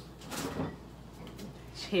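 Refrigerator door pulled open and a bottle of milk taken out, with a brief soft bump about half a second in.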